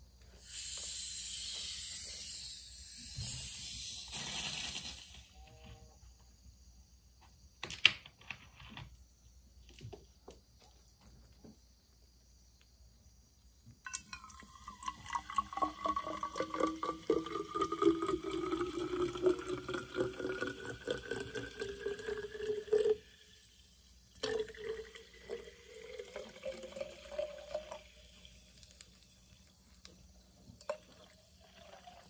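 Club soda hissing loudly for a few seconds as its plastic bottle is opened. It is then poured into an insulated water bottle, fizzing and gurgling with a tone that rises as the bottle fills, and after a brief pause there is a second, shorter pour.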